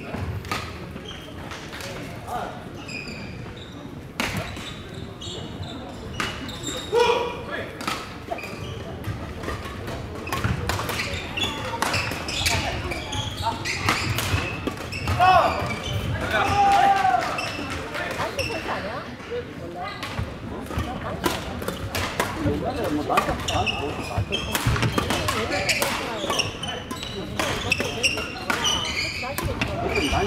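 Badminton hall din: a steady run of sharp racket-on-shuttlecock strikes and footfalls from several courts, under a background of overlapping voices, echoing in a large gym. A few short squeaks, from shoes on the wooden floor, come near the middle.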